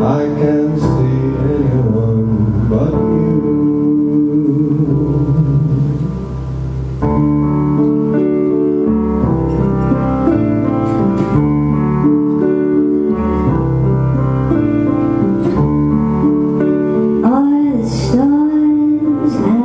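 Live acoustic music: piano playing slow sustained chords with an acoustic guitar played along, and a voice coming in to sing near the end.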